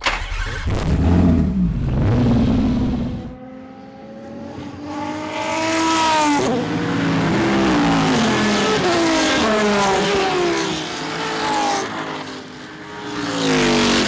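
Racing car engines accelerating hard. A deep rumble opens, then several climbs in engine pitch, each broken by a drop at a gear change.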